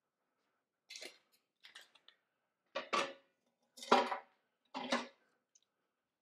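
Metal objects clanking as they are handled: a series of about five or six short clanks spaced roughly a second apart. The first two are light, and the later ones are louder, the loudest about four seconds in.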